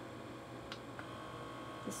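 Small electric suction motor of a handheld blackhead-vacuum/microdermabrasion tool running faintly at a low speed setting, with a light click about a second in, after which a thin steady whine comes in.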